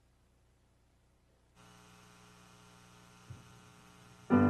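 Near silence with a faint, steady electrical mains hum from the sound system, which gets louder and buzzier about one and a half seconds in. A single soft knock comes near the end.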